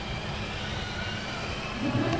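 Steady low outdoor background rumble, like distant traffic.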